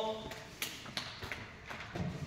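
Bare feet stepping lightly on foam mats, a few faint taps and thuds spread over two seconds, as the athlete steps back from his finishing stance to the ready position.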